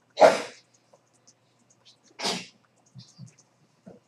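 A person sneezing twice: a loud sneeze just after the start, then a shorter, quieter one about two seconds later.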